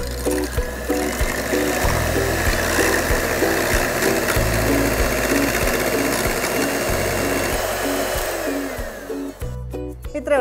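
Electric hand mixer whirring steadily as its beaters whip eggs in a glass bowl, then winding down and stopping near the end. Background music plays throughout.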